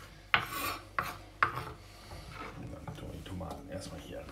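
Kitchen knife chopping cherry tomatoes on a wooden cutting board: three sharp knocks of the blade on the board in the first second and a half, then irregular rubbing and scraping of the knife across the board.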